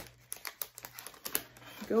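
Shiny plastic or foil packaging crinkling as it is handled, in a run of short, quiet crackles.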